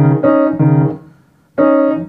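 Piano with both hands playing the groups of two black keys as clusters: a quick run of alternating chords, a short pause about a second in, then another chord near the end.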